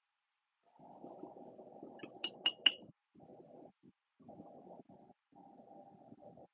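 Three quick, sharp clinks of small hard objects knocking together, about a quarter second apart, amid muffled rustling from handling art supplies and a tissue.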